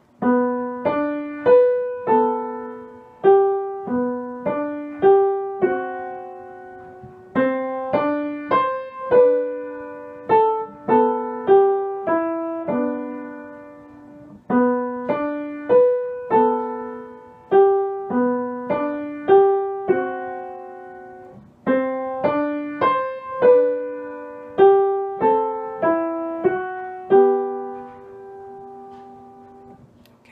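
Grand piano playing a simple tune slowly in single notes in the middle register, in four short phrases, each ending on a held note that fades away.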